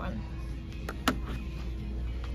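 A low steady hum with two sharp clicks about a second in, from plastic headphones being handled.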